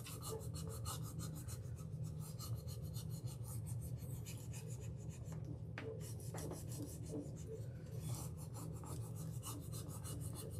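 A flat applicator tool rubbing a rub-on transfer down onto a painted wooden cutout: rapid, repeated scratchy strokes through the clear transfer sheet, burnishing the design onto the surface, over a steady low hum.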